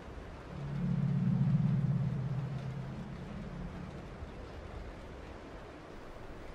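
A low humming drone swells up about half a second in and fades away over the next few seconds, over a faint steady hiss.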